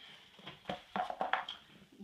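Handling noise: a cluster of light knocks and scuffs over the middle second as a piece of cardboard is set aside and hands move onto the leather upholstery.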